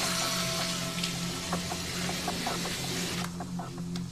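Water running from a tap into a sink basin, a steady hiss under soft background music; the water sound cuts off abruptly shortly before the end.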